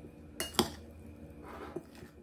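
A metal fork clinks against a ceramic salad bowl while stirring a dressed salad. There are two sharp clinks about half a second in, then softer scraping and a light tap near the end.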